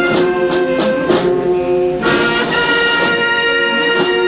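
Brass band playing slow, long-held chords, the harmony changing about halfway through, with drum strokes in between.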